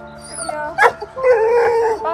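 A dog giving a long, wavering howl-like call for most of the last second, over steady background music. A short sharp cry comes just before it.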